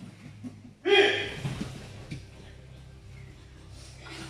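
A single loud shouted call about a second in, over a steady low hum.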